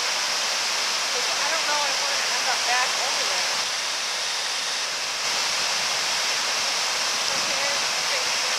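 Waterfall pouring steadily: a continuous, even hiss of falling water.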